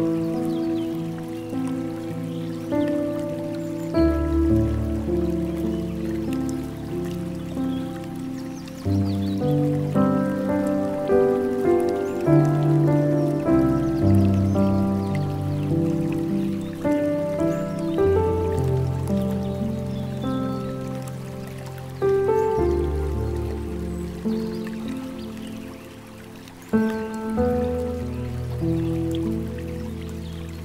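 Slow, gentle piano music with long held low notes, over a faint trickle of flowing water.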